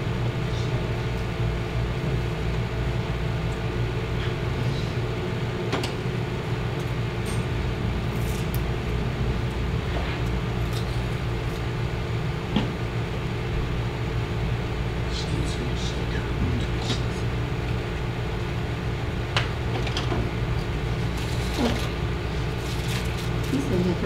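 A steady low room hum throughout, with a few small scattered clicks and taps as a plastic glue bottle and tools are handled on the table.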